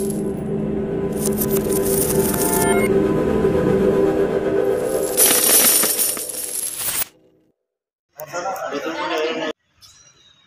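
Intro sound effect of a shower of coins clinking and jingling over held musical tones, cutting off suddenly about seven seconds in. A short burst of voice follows about a second later.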